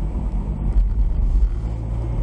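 Car engine and road rumble heard from inside the cabin of a moving car, steady and low-pitched.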